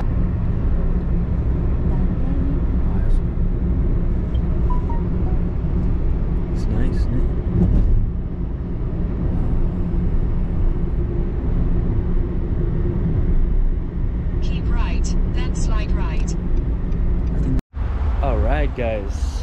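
Steady low road and engine rumble inside a moving car's cabin. A voice comes in faintly near the end, and the sound cuts off suddenly just before the end.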